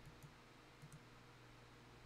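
Near silence with three faint computer mouse clicks: one about a quarter second in, then two close together near the one-second mark.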